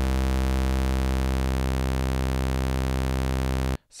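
Bitwig Polysynth oscillator sustaining one low, buzzy note while its waveshape is morphed from a square wave toward a saw wave, bringing even harmonics in among the odd ones. The note cuts off suddenly just before the end.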